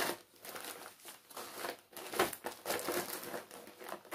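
Bag packaging crinkling as it is handled, in short irregular spells.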